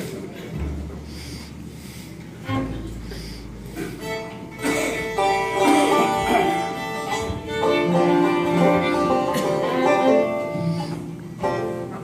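Acoustic bluegrass band of fiddle, banjo and acoustic guitar starting a song: a few scattered notes at first, then the whole band playing together from about four seconds in.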